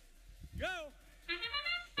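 A countdown voice calls 'go', and about a second later the FIRST Robotics Competition field's match-start sound comes in: a loud horn-like chord of steady tones that signals the start of the autonomous period.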